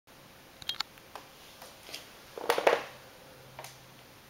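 A few scattered clicks and knocks, the loudest two close together about two and a half seconds in, against quiet room tone.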